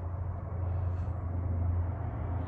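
A steady low hum with a faint, even background hiss and no distinct events.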